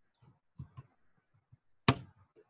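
Handling noise from copper wire being worked by hand around a coil assembly: a few soft taps and clicks, then one sharp, much louder knock near the end.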